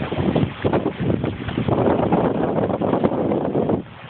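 Wind buffeting the microphone aboard a sailing trimaran under way, a loud, gusty rushing noise that drops away sharply just before the end.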